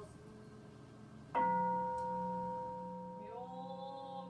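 A Buddhist temple bowl bell (kin) struck once about a second in, ringing on with a clear, steady tone that slowly fades. Near the end, voices begin chanting over the ring.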